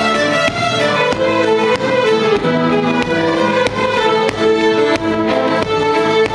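A large group of fiddles playing a tune together, with sustained bowed notes moving in steps over a steady pulse of sharp accents.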